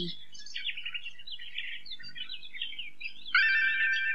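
Small birds twittering in rapid short chirps as a background sound effect. About three seconds in, a held electric guitar chord with effects comes in over them.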